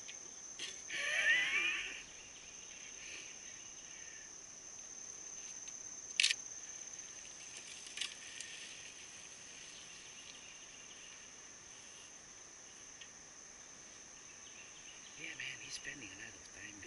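Steady, high-pitched chorus of insects in summer woodland. A short loud burst with a rising squeal comes about a second in, and sharp clicks come about six and eight seconds in.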